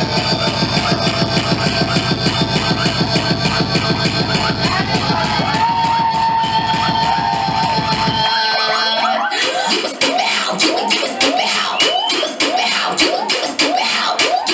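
Loud electronic dance music with a fast, heavy bass beat. About eight seconds in the bass drops out and the track switches to a section of quick, repeated sweeping sounds over sharp percussion.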